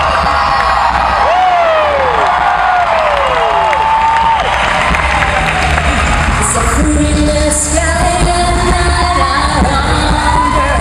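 An a cappella group sings with unaccompanied voices. In the first few seconds the voices swoop down in pitch several times; from about seven seconds in they hold sustained stacked chord notes over a lower bass line.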